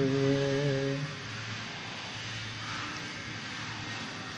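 A singing voice holds one note for about a second and stops, leaving a quieter low steady drone under a hiss until the next sung line: a pause in a background devotional song.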